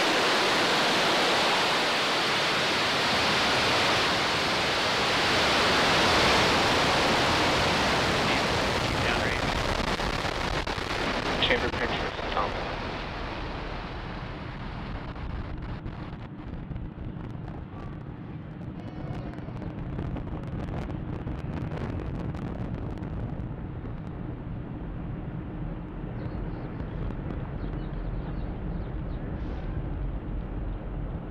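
Falcon 9's nine Merlin 1D first-stage engines at full thrust during liftoff and climb: a loud, steady rushing noise. About twelve seconds in it loses its hiss and drops in level to a duller, crackling rumble.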